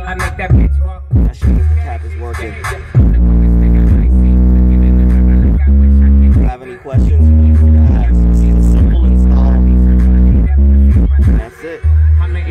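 Hip-hop song played loud through a car stereo's subwoofers, with heavy, sustained bass notes that drop out briefly about six and a half seconds in and again just before the end.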